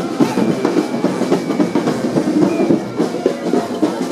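New Orleans brass band playing a parade tune, with drum beats and horns.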